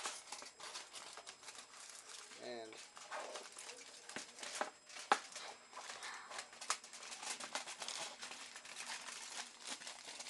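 Aluminum foil and a cut plastic bottle being handled and pressed together, crinkling and crackling with irregular sharp clicks throughout, as the foil is pushed back into the bottle.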